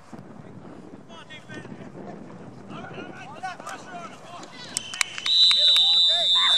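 A referee's whistle blown once near the end: one loud, steady, shrill note held for about a second and a half, just after a few sharp clicks. Players' voices shout before it.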